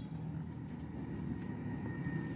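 A steady low background hum with no distinct events: room tone.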